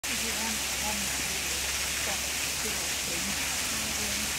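Steady rushing water noise, with faint voices talking in the background.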